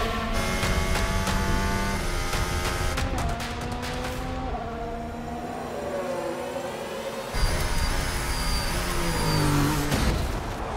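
Formula 1 cars' turbocharged V6 hybrid engines running at racing speed, their pitch falling and rising as the cars brake and accelerate. The engine sound jumps suddenly louder about seven seconds in, then climbs in pitch. A dramatic music score runs underneath.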